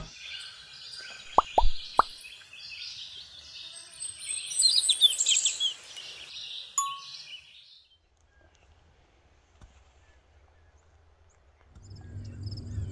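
Sound effects of an animated intro: birds chirping, three quick pops in the first two seconds, and a single ding about seven seconds in. The birdsong stops about eight seconds in, leaving only a faint hum.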